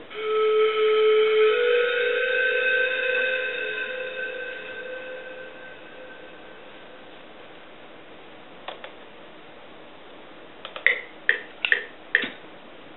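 Software synthesizer (Nexus² plugin) playing a sustained chord that comes in at once, its notes stepping up after about a second and a half, then fades away over several seconds. Later there is one short note, and near the end a quick run of about four short stabbed notes.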